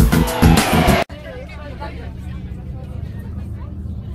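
A loud music jingle with a falling sweep cuts off abruptly about a second in. A steady low vehicle engine hum follows, with faint voices of people chatting over it.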